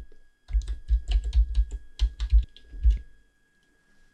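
Computer keyboard typing: a quick run of about a dozen keystrokes over some two and a half seconds, stopping about three seconds in.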